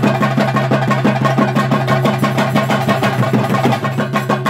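Fast, continuous drumming of the kind played on chenda drums for a theyyam, with cymbals and a steady low drone underneath.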